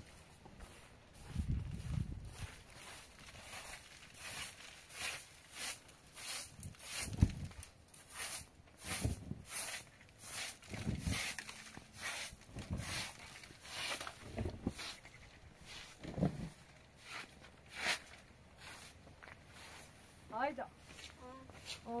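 Short straw hand broom sweeping a carpet in short, repeated scratchy strokes, with occasional dull thumps. A voice comes in near the end.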